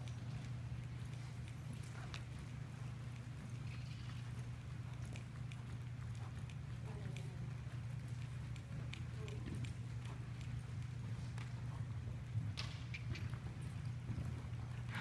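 Hoofbeats of an Arabian horse trotting on soft arena footing, heard as faint scattered thuds over a steady low hum.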